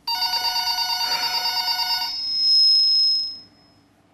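Telephone ringing: an electronic ring with a fast flutter for about two seconds, then a swelling high tone that fades out, signalling an incoming call.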